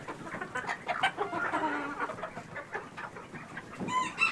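A flock of chickens clucking softly while they feed, with many quick light taps of beaks pecking at the barn floor.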